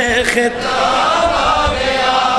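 A man's voice chanting a devotional naat over a public-address system: a few quick sung syllables, then one long held note.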